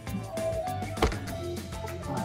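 Background music, with one sharp click about a second in: a golf club striking a ball off a turf hitting mat.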